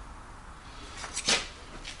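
A few light clicks and a soft knock around the middle, as a steel touch-mark punch is handled and set square on a machined aluminum block, over a faint low hum.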